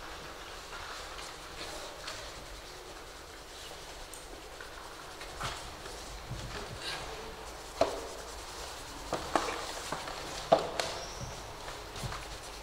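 Quiet room noise with scattered light clicks and knocks, more frequent in the second half, with two sharper knocks at about eight and ten and a half seconds in.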